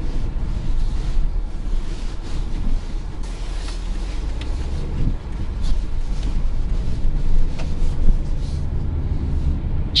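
Subaru Outback driving on a rough winter road, heard inside the cabin: a steady low rumble of tyre and road noise. A few short knocks come through as it goes over bumps and potholes.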